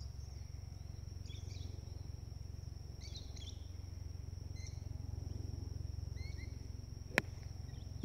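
A golf club striking a ball off the tee once, a single sharp crack near the end. Underneath run a steady low outdoor rumble, a steady high thin whine and a few short bird chirps.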